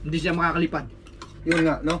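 Spoons and cutlery clinking on plates and bowls as people eat, with voices over it at the start and again near the end.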